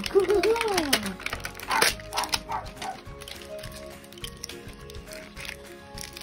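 A child's voice sings or hums in rising and falling swoops for about the first second. Then a plastic tray is handled and pulled from its cardboard box with scattered short crinkles and clicks, over soft background music of steady held notes.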